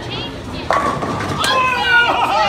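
Children's voices shouting and squealing. One high yell starts suddenly about two-thirds of a second in and is held, with a short sharp knock about halfway through.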